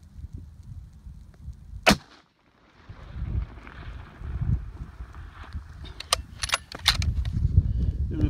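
.260 Ackley Improved rifle firing a single loud shot about two seconds in, then wind rumbling on the microphone. A few sharp ticks come near the end.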